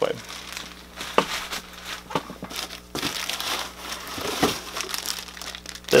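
Plastic packaging crinkling and rustling in irregular bursts as a wrapped part is handled, with a few sharper crackles, over a faint steady low hum.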